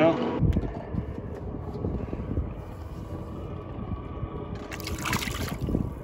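Wind buffeting the microphone on an open boat: an uneven low rumble with gusts, and faint water sounds.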